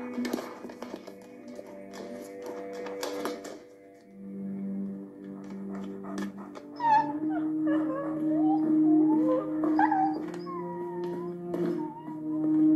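Background music with steady held tones and a few quick clicks in the first three seconds. From about seven seconds in, a German Shepherd whines and howls in wavering cries that rise and fall.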